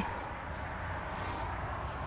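Steady, low outdoor background noise with a faint rumble and no distinct sounds standing out.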